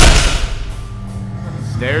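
A heavily loaded barbell of about 565 lb set down hard on the rubber gym floor at the end of a deadlift. It makes one loud thud with a clatter of plates that dies away over about half a second, over background music.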